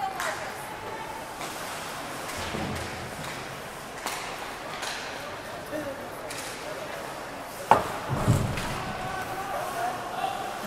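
Ice hockey rink noise from players skating. About three-quarters of the way through comes a single sharp bang against the rink boards, the loudest sound, followed by a low rumble from the boards.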